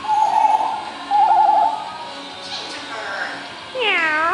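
African grey parrot vocalizing: two warbling trills in the first two seconds, then near the end a loud swooping whistle that dips and rises again.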